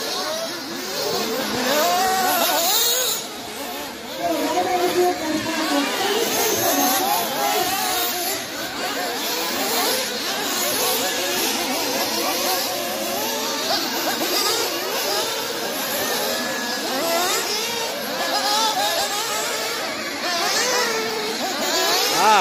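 Several 1/8-scale nitro buggies' small two-stroke glow engines revving as they race, the overlapping engine notes climbing and falling over and over.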